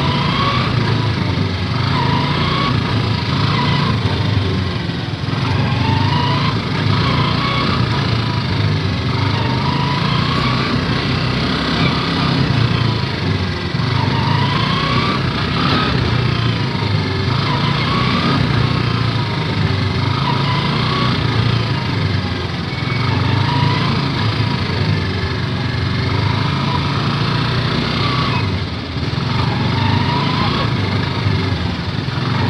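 Motorcycle engine of a tricycle (motorcycle with sidecar) running steadily while under way, heard from inside the sidecar. Short rising tones come back every couple of seconds over the engine.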